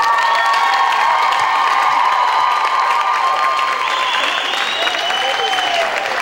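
Audience applauding and cheering, with several long, high-pitched shouts held over the steady clapping.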